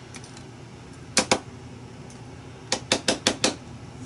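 Small plastic acrylic paint containers clicking and knocking together as they are handled and picked through. Two clicks about a second in, then a quick run of about six clicks near the end.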